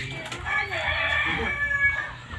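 A rooster crowing once, a single call lasting about a second and a half.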